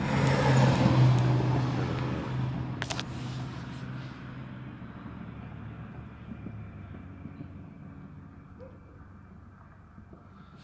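A motor vehicle's engine hum going by, loudest about a second in and then slowly fading away.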